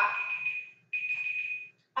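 Workout interval timer beeping a steady high tone to mark the end of the set: one beep ends about half a second in, and a second beep of just under a second follows.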